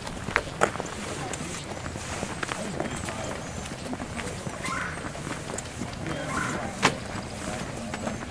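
A group of people walking on an asphalt road: scattered footsteps and sharp clicks, one louder click about seven seconds in, under faint talk among the walkers.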